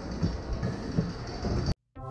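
Roller coaster station ambience: a steady noisy background with a few short knocks from the train and station. It cuts off abruptly near the end.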